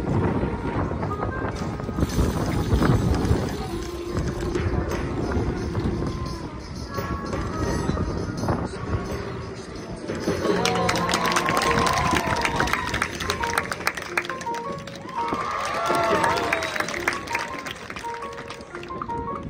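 Marching band show music, with held notes and, in the second half, a run of percussive hits and wavering, gliding calls over them.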